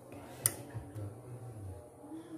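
A single sharp click about half a second in, over a faint low background hum.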